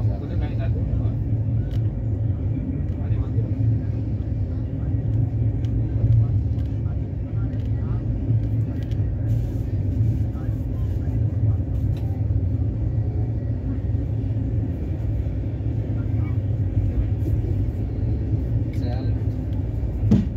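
Steady low rumble of a moving train, heard from inside the passenger carriage, with faint voices in the background.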